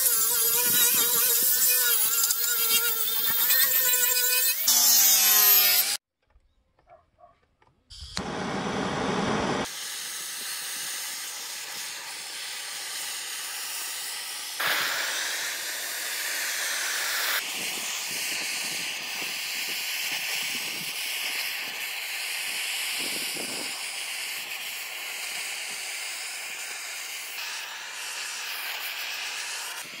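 An angle grinder with a sanding disc runs against pine pallet slats for about five seconds, its whine wavering as it is pressed and eased, then winding down. After a short silence comes a loud burst of noise, then a gas blowtorch hisses steadily for the rest, scorching the wood.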